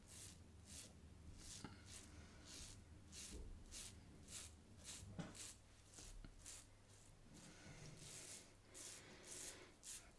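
Faint scraping of a single-edge safety razor's half DE blade through lather and stubble, shaving against the grain in short strokes at about two a second. The blade is dull and near the end of its life, beginning to tug.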